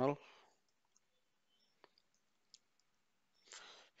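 A few faint, scattered computer keyboard keystrokes.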